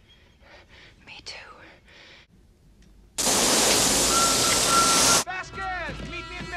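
Movie soundtrack: faint breathy sounds, then about three seconds in a loud, steady hiss with a thin high tone in it that cuts off suddenly two seconds later, after which music begins.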